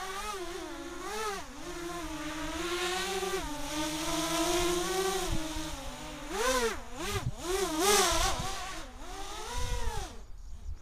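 Quadcopter's electric motors and propellers whining in flight, the pitch swinging up and down continually with throttle changes. In the second half the swings get bigger and sharper, with several louder surges and quick dips in pitch.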